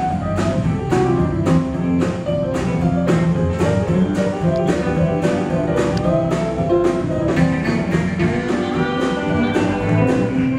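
Live country band playing an instrumental passage: piano, electric guitar, bass and drums, with a steady beat about two to the second.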